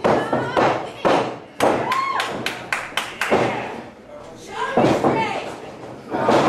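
Sharp smacks and thuds of a pro wrestling bout: strikes landing and bodies hitting the ring, with a quick run of about seven smacks, roughly three a second, in the middle. Shouting voices come in between the hits.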